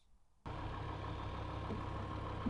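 BMW M5's S85 V10 engine idling steadily, coming in abruptly about half a second in after a brief near silence.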